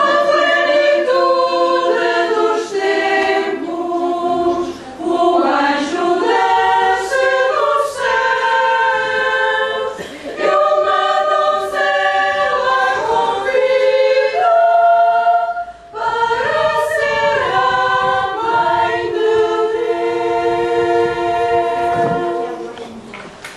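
A choir singing in several parts, held notes in phrases of about five seconds with brief breaks between them.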